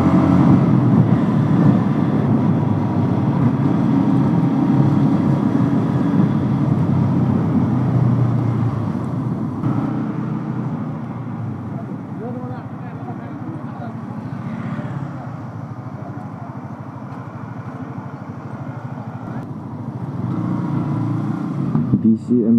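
A motorcycle riding along, with its engine and road noise heard from the rider's seat. The sound is louder for roughly the first half, drops to a quieter level for several seconds, and picks up again near the end.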